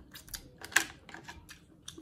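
Close-miked chewing of seafood: an irregular run of wet mouth clicks and smacks, several a second.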